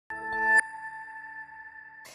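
A short electronic ident sting for a TV news bulletin: a chord that swells for about half a second, then cuts to a single high tone that rings on and slowly fades.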